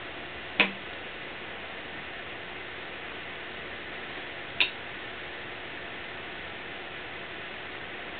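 Two sharp, short clicks about four seconds apart, the first a little after the start, over a steady background hiss.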